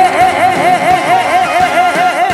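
Male trot singer holding the song's final sung note with a wide, fast vibrato over the backing band.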